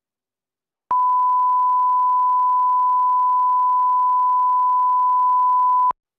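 Broadcast 1 kHz line-up tone over the countdown clock: one steady pure beep that starts about a second in and cuts off suddenly just before the end. It is the reference tone for setting audio levels before the programme.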